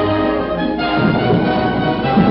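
Orchestral cartoon underscore playing under fast slapstick action.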